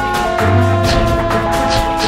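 Intro theme music: long held notes over a bass line, with regular percussion hits roughly every half second.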